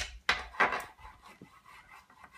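A few short scrapes and rubs from a child's toy construction tool working against a wooden box, the loudest three in the first second, then quieter handling noise.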